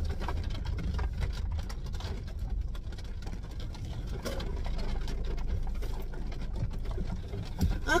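Rain pattering on the roof and windows, heard from inside a car cabin over the low rumble of the car rolling slowly. There is a single soft knock near the end.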